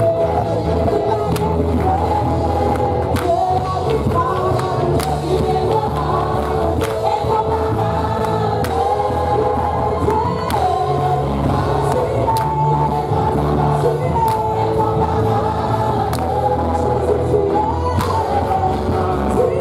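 Live gospel worship music: loud, steady group singing over a heavy bass, with hand clapping.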